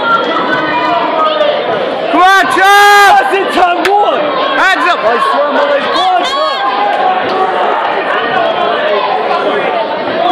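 Boxing crowd shouting, several voices calling out over one another, with one loud drawn-out shout about three seconds in and a single sharp crack just after it.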